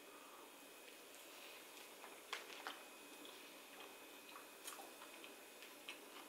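Faint chewing of a bite of spicy fried chicken sandwich: a few soft clicks and smacks over near silence.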